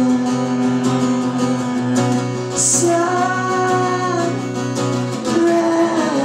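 Live solo performance: a man singing over a strummed acoustic guitar, holding long sung notes about halfway through and again near the end.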